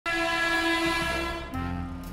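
Train horn sounding one long, steady blast that fades after about a second and a half, then music with a low bass line comes in.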